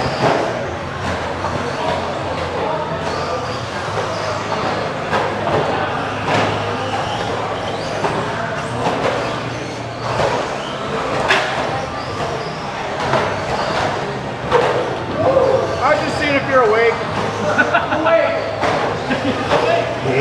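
Electric RC stadium trucks racing on an indoor dirt track: motor whine and tyre noise with scattered knocks, under voices and chatter echoing in the hall.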